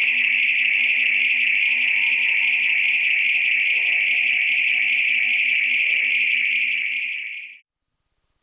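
A loud, steady, shrill high-pitched electronic drone in the performance's soundtrack, holding level and then cutting off suddenly shortly before the end.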